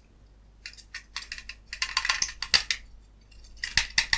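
Small plastic clicks and rattles of an ultrasonic pest repeller's plastic housing and circuit board being handled and worked apart by hand: a run of clicks from about a second in, and another cluster near the end.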